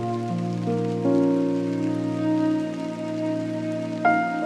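Chill lofi instrumental music: slow, held chords that shift about a second in, over a steady rain-sound layer.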